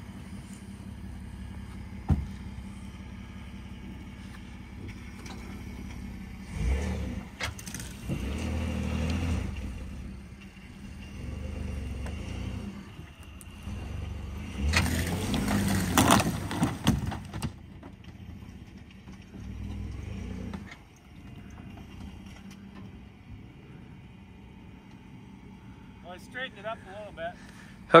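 A Ford F-150 pickup's engine idles, then revs in surges as the truck pulls on a tow strap to try to roll an overturned car back over. The longest and loudest pull comes about halfway through.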